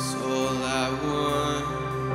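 Live worship band playing a slow song: steady held chords from guitars and keys, with a singing voice briefly wavering over them in the middle.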